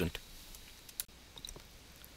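A single sharp click about a second in, followed by a few faint ticks, over low room hiss.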